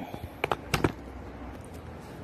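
Three short, sharp clicks from glass bottles being handled, coming about half a second to just under a second in, over a steady low background hum.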